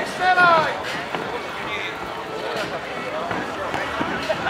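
A loud shouted call on the pitch about half a second in, then steady outdoor background of crowd chatter and players running during a street-football game.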